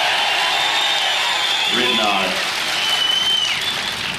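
A large outdoor crowd applauding steadily, with a short voice about halfway through and a whistle near the end.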